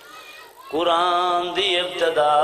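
A man's voice chanting in a majlis recitation: after a short pause, about two-thirds of a second in, he begins a long held note that wavers slightly in pitch.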